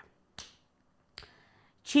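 Two short, sharp clicks about a second apart, made by a person; the second trails into a faint, short hiss.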